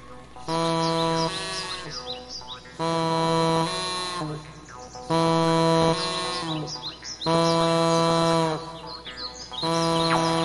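Harmonica played live through a microphone: held notes about a second long, each followed by a shorter lower note, repeating in phrases roughly every two seconds. Quick, high, bird-like chirping whistles run over it.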